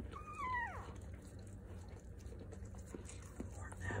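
Newborn puppy crying once, a thin high squeal that slides down in pitch and lasts under a second, as the mother dog licks it clean. It is a sign the pup is starting to breathe. Faint wet licking ticks follow.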